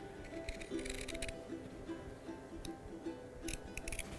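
Scissors snipping through cotton fabric, a run of quick cuts in the first second or so and a few more near the end, over soft background music with a repeating melody.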